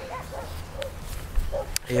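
A few faint, short animal calls, like distant yips, near the start and around the middle, over a steady low outdoor rumble.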